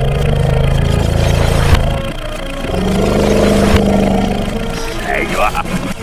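Cartoon vehicle engine sound effects: two loud, low engine rumbles, the second with a steady hum, over background music.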